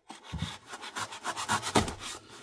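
Folding pocketknife blade slicing through packing tape along the edge of a cardboard shipping box, a run of short scratchy strokes.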